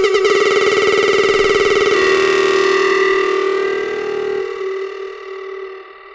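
Hard trance breakdown: a rapidly pulsing synthesizer chord plays without the kick drum, getting steadily duller as its highs are filtered away. Its bass cuts out about four and a half seconds in, and it fades toward the end.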